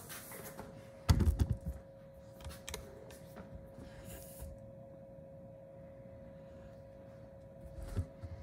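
Steady electrical hum with a thin high tone from lab equipment, broken about a second in by a short cluster of dull knocks, then a few faint clicks and a brief hiss.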